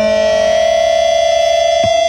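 A rock song's closing held note, most likely a sustained electric guitar tone: one steady high pitch with overtones that keeps ringing without a break. A short low downward slide cuts across it near the end.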